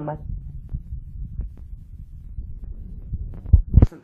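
Low rumbling handling noise from a phone being moved and turned in the hand, with faint clicks and two heavy thumps on the microphone near the end.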